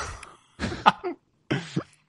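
A man laughing and coughing in short, breathy bursts, with one sharp cough-like hit about a second in and a brief silent gap before a last burst.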